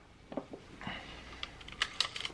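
A few light clicks and faint rubbing as an open Pentax Spotmatic's metal body and exposed bottom mechanism are handled and turned over.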